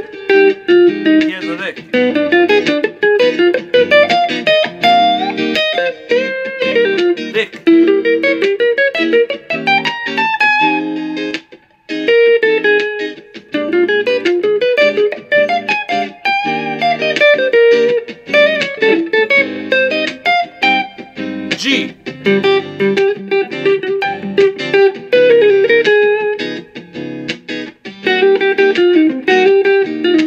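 Electric guitar, a Gibson Custom Shop 1958 mahogany Flying V through a 1967 Fender Pro Reverb amp, playing jazz single-note lines built on half-step moves, with one short break a little before the middle.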